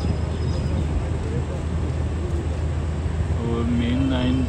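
Steady low rumble of railway station ambience with faint voices in the background; a man starts talking near the end.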